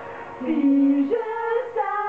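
A woman singing karaoke over a backing track. After a short gap at the start, a new sung line comes in about half a second in, with long held notes.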